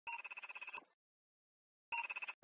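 Intro sound effect: a rapidly pulsing electronic ring at a steady pitch, like a telephone ringing. It sounds in two bursts, the first about three-quarters of a second long, the second starting just before the end.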